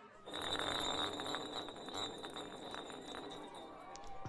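A bottle spinning on a hard surface: a rattling whir with fast faint clicks that starts just after the beginning and slowly dies away as the spin slows.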